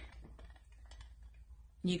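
Quiet pause with a steady low hum and a few faint, short clicks, as from handling a ceramic Santa bank; a woman's voice comes back near the end.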